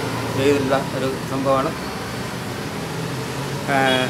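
A man speaking in short phrases, with a pause in the middle, over a steady low background hum.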